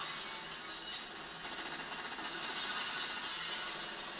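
Action-film soundtrack playing from a television and picked up by the camera's microphone: a continuous din of glass shattering and breaking.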